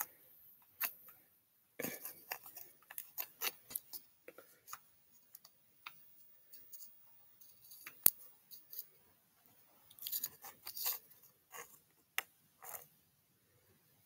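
Scattered clicks, taps and rustles of a hand-held rock and flashlight being turned close to the microphone, with one sharp click about eight seconds in.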